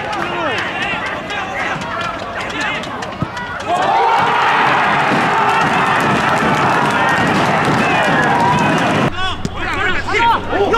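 Many voices in a football stadium shouting and calling during an attack, then bursting into loud, sustained cheering and yelling about three and a half seconds in as the goal goes in. The sound changes abruptly near the end.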